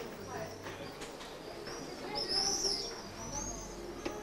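Birds chirping in short, high, arching calls, loudest a little past the middle.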